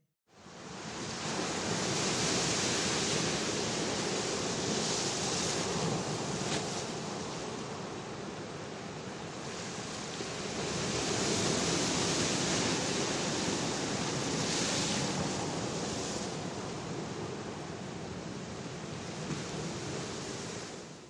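Ocean surf: a steady rush of waves breaking on a shore, swelling and easing every few seconds.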